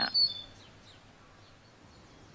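Thin, high bird calls in the first half second, fading out, then faint outdoor background.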